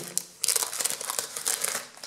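Clear plastic packaging bag crinkling as a metal cutting die is pulled out of it, with a short lull about half a second in.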